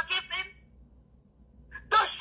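A person's voice talking or exclaiming, breaking off about half a second in. After a short pause the voice starts again near the end.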